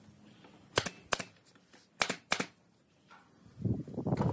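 Nail gun firing four sharp shots into a pine frame, in two pairs about a second apart. A louder scuffling noise begins near the end.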